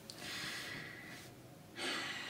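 A woman breathing audibly, with no words: a soft breath in the first second, then a second, sharper breath near the end.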